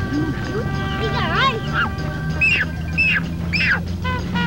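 Ducks and geese calling on a pond: a swooping call a little over a second in, then three loud descending honks about half a second apart in the last two seconds, over background music of held notes.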